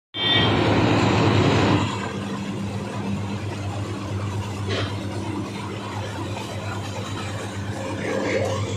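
Sugarcane unloading machinery running with a steady low hum. For the first couple of seconds a louder, rough rushing noise sits over it.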